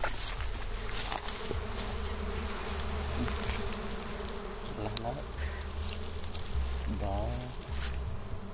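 A swarm of dwarf honey bees buzzing, a steady dense hum, stirred up around their wild comb as it is cut away and handled.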